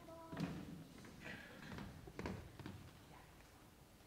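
Footsteps and soft knocks on stage risers as a singer moves down to the front row: a few scattered thumps, the loudest about half a second in and again a little after two seconds, with a brief held note at the very start.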